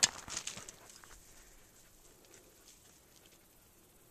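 Brief crackling and rustling of dry grass and brush underfoot in the first second, then only faint scattered ticks.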